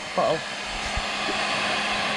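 Electric heat gun running, its blower giving a steady rush of air with a faint hum underneath, growing louder about half a second in as it is aimed at plastic wrap.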